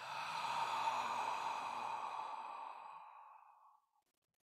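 A man's long, slow exhale through the mouth, a breathy sigh that fades out gradually over nearly four seconds. It is the controlled release of breath in a breathing exercise.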